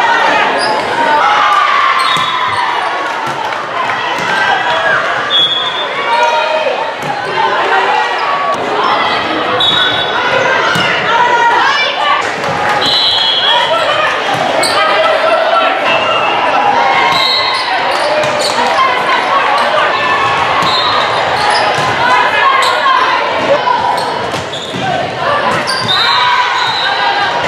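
Live sound of an indoor volleyball game in a large gym: the ball being struck and hitting the hardwood court, short high sneaker squeaks, and players' and spectators' shouts and chatter, all echoing in the hall.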